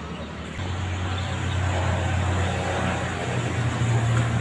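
A motor vehicle's engine running close by: a steady low hum that comes in about half a second in and rises a little in pitch near the end.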